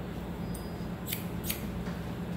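Hairdressing scissors snipping hair: two crisp snips a little after a second in, close together, with fainter snips before and after.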